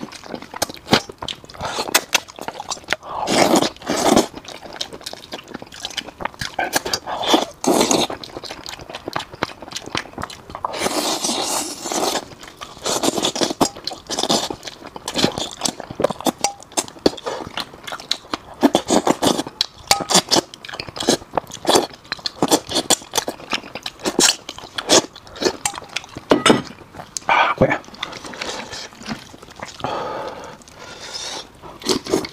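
Close-miked eating of braised fish: chewing, biting and sucking at the flesh, with many quick wet clicks and bursts of crunching throughout.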